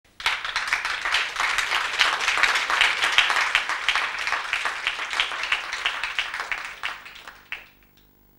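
Audience applause in a theatre, starting suddenly and dying away with a few last scattered claps near the end.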